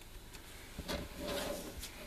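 Hands rubbing and sliding over paper cardstock and a cutting mat: a short, dry, scratchy rustle lasting about a second, in the middle.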